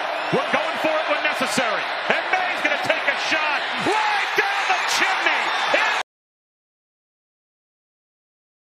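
Football stadium crowd noise with many indistinct voices and a few sharp claps or thuds, cutting off suddenly about six seconds in to silence.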